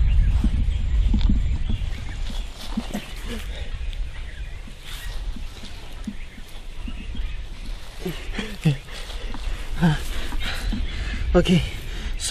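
A man's short, scattered grunts and muttered vocal sounds, with a low rumble in the first couple of seconds.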